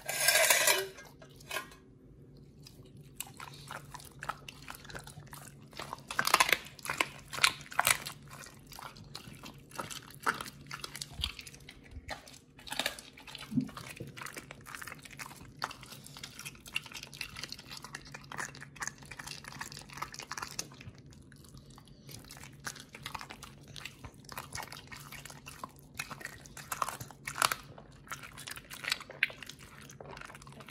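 Pit bull biting and chewing a raw chicken quarter held out by hand: irregular wet bites and bone crunches, with a loud noisy burst right at the start.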